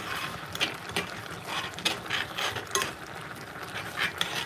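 Metal spoon stirring stew in an aluminium pot, scraping and clinking against the pot at irregular moments over a light hiss.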